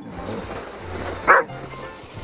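A young German Shepherd barks once, a single short bark about a second and a half in, over background music.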